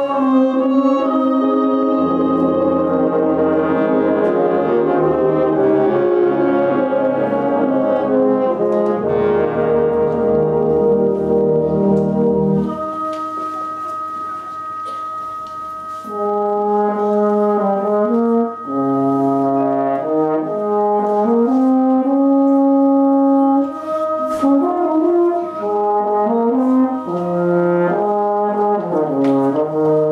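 Brass band playing a slow, tranquil piece. The full band plays for the first dozen seconds or so, then the texture thins to a baritone horn solo carrying the melody over soft held chords.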